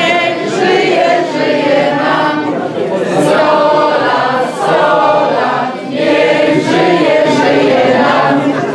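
A roomful of guests singing together in unison without accompaniment, a loud group chorus of mixed voices following a toast.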